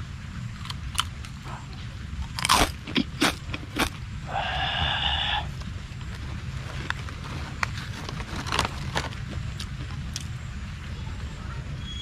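Biting into and chewing a dry, crunchy cracker close to the microphone: sharp crunches, loudest about two to four seconds in, then scattered smaller crackles. A brief pitched call or hum sounds for about a second just after the loudest crunches, over a steady low rumble.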